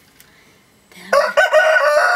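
A rooster crowing: one long, loud crow that starts about a second in.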